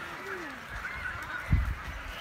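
Many colony birds of a pelican and cormorant breeding colony calling over one another in short rising and falling honking calls. A low thump comes about one and a half seconds in.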